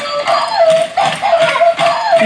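Battery-operated bump-and-go Dalmatian puppy toy playing its electronic melody, a simple tune of short stepped notes, with a few clicks from the toy as it runs.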